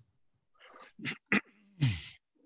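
A man clearing his throat a few short times, the last a rough grunt falling in pitch.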